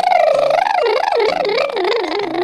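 Comic cartoon sound effect: a high, voice-like warbling tone whose pitch wobbles up and down several times and sinks toward the end, over a light background music bass line.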